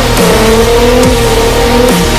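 Drift car's engine running at high revs as the car slides sideways through a corner on a wet track, mixed with loud electronic music with a heavy beat.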